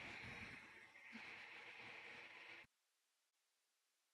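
Near silence: a faint hiss that cuts off about two-thirds of the way through into total silence.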